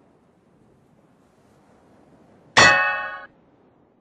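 A single loud cartoon metallic clang sound effect about two and a half seconds in, ringing with many overtones for under a second before it is cut off sharply. Before it there is a faint hiss that slowly grows.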